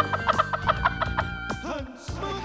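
Rapid staccato clucking, like a hen's cackle, about eight short pulses a second over background music, stopping about a second and a half in.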